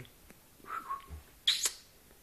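A rough collie puppy whimpering: a short high whine that falls slightly in pitch, then a louder, sharp squeak about one and a half seconds in.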